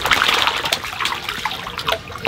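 Water trickling and splashing as a mesh net full of koi is dipped into a tank and the fish slip out into the water, with a few sharper splashes.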